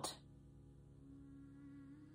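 Near silence: a faint, steady humming drone, with a held tone coming in about a second in.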